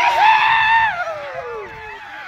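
A person's long high yell, held steady for about a second and then sliding down in pitch, with other voices calling faintly around it.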